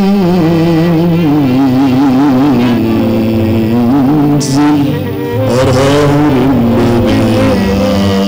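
A man singing a long, ornamented Arabic vocal line, holding notes and then wavering up and down through melismatic turns, over instrumental accompaniment.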